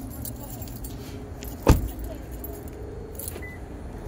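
Keys jingling in a hand during a walk across a parking lot, over a low steady outdoor rumble, with one sharp knock a little before halfway.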